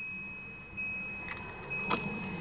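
Quiet car cabin with the ignition key being worked, engine off: two soft clicks in the second half over a faint, steady high-pitched whine.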